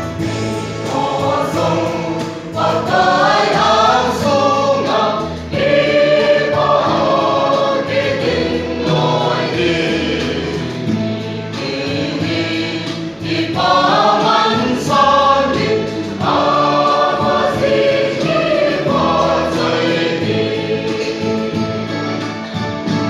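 A mixed choir of men and women singing a hymn together, with louder swells in the singing.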